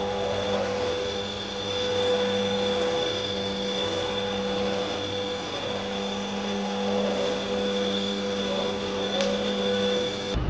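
Stick vacuum cleaner running steadily on a tiled floor: an even motor hum with a high whine.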